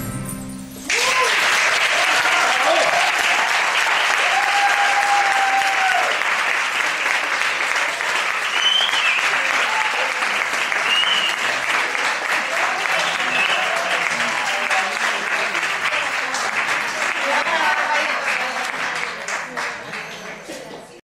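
Audience applauding, breaking out about a second in as the dance music stops, with a few voices calling out over the clapping.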